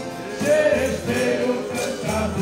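Live accordion music with a man singing into a microphone and others singing along, a hand-shaken maraca keeping the rhythm.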